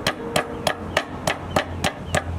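Large knife chopping through snake onto a wooden chopping board: a quick, even run of sharp strikes, about three a second.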